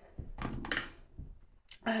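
A few thunks and handling noises as a tube of makeup primer and other cosmetics are picked up from a bathroom counter. A young woman's voice comes in near the end.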